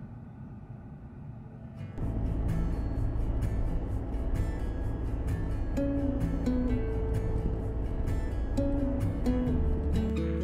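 Low road noise inside a moving car, then background music with a steady beat and a plucked melody comes in about two seconds in and carries on over it.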